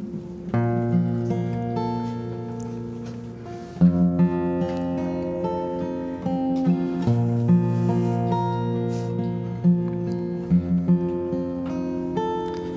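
Steel-string acoustic guitar playing a slow instrumental introduction: a chord struck about every three seconds and left ringing, with single notes picked above it.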